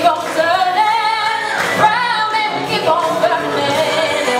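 A woman singing into a microphone over a PA, holding long notes that bend up and down in pitch.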